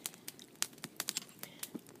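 Wood campfire crackling: irregular sharp pops and clicks, several a second.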